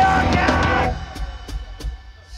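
Live punk rock band (electric guitar, bass, drum kit and a held sung note) stopping abruptly about a second in, the song ending. Three sharp, separate drum hits follow in the quieter part.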